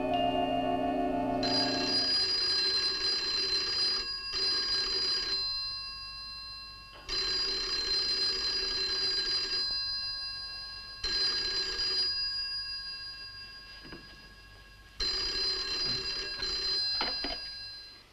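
Telephone bell ringing four times with pauses between, the last ring stopping as the receiver is picked up.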